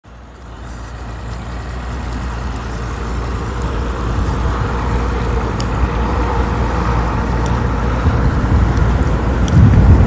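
Bass boat outboard engines running, a steady low rumble that grows steadily louder. Near the end, wind buffets the microphone.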